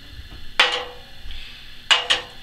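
A magnet clicking onto thin-wall 4130 chromoly steel tube, showing that the steel is magnetic: a sharp metallic click about half a second in with a short ring after it, and a second click near the end.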